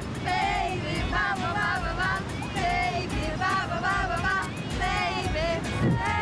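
A group of young women singing their team anthem together in short held phrases, over a low steady beat.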